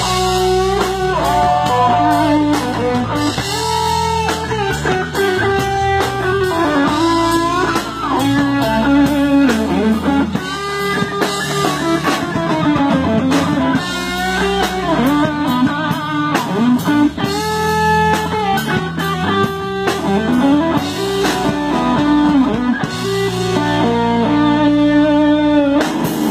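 Electric guitar solo in a live rock band, the lead line full of notes that glide up and down in pitch, over a steady bass and drum backing.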